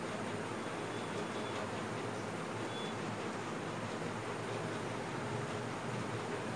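Steady background hiss, with a dry-erase marker drawing on a whiteboard giving two faint, brief high squeaks about one and three seconds in.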